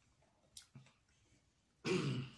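A man's short, closed-mouth "mm" of enjoyment while eating, starting suddenly near the end, after a quiet stretch with a couple of faint clicks from fingers picking at ribs.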